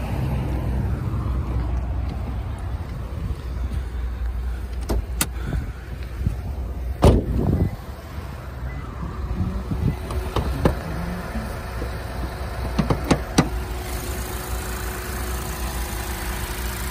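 A 2010 Lexus IS250C's 2.5-litre V6 idling steadily and sounding healthy. A single sharp clunk comes about seven seconds in as the hood is released and raised, with a few lighter clicks and knocks later on.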